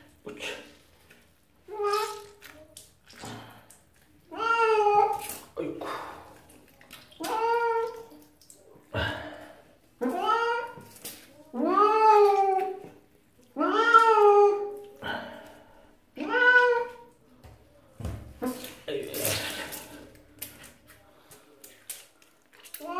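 A wet tuxedo cat meowing over and over while being bathed: long drawn calls that rise and fall in pitch, about one every second.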